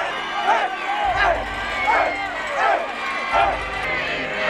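Young men shouting and chanting in celebration: a string of short, loud, rising-and-falling shouts, with a crowd noise underneath.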